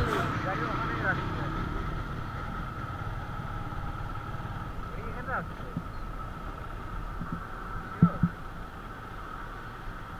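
Motorcycle engine running steadily at low speed, with a faint voice now and then and a brief double knock about eight seconds in.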